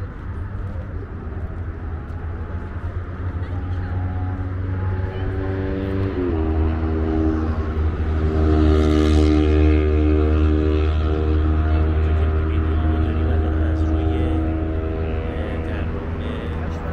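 Motor traffic on the highway below the bridge: a steady low rumble with an engine drone that grows louder to a peak about halfway through, then slowly eases.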